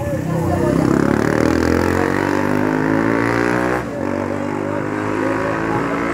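Motorcycle engine running close by, its pitch climbing for a couple of seconds as it accelerates, then holding steady.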